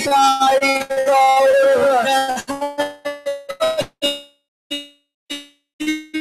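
Kirtan music winding down: a held sung note with accompaniment for about two seconds, then a run of separate, ringing percussion strokes that slow down and thin out toward the end.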